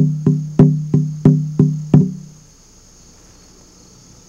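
A rawhide hand drum struck with a padded beater in a steady loud-soft beat, about three strokes a second, each stroke ringing with a low pitch. The drumming stops about two seconds in, leaving a faint steady high-pitched chirr of insects.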